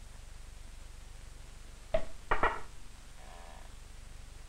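Metal parts of the scattering apparatus being handled, most likely as the gold foil holder is taken out of the chamber: one sharp metallic knock about two seconds in, then two more close together, followed by a brief ringing.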